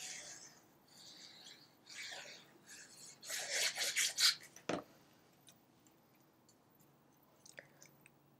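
Faint scratchy rubbing of a liquid-glue bottle's tip dragged across card stock in short strokes, with the card rustling in the hand; the strongest stretch comes a little past three seconds in, and one sharp click just before five seconds.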